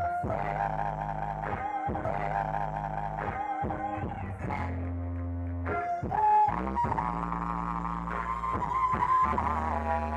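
Female vocal group singing live, long held notes with vibrato, over a backing of sustained low bass notes and occasional drum hits.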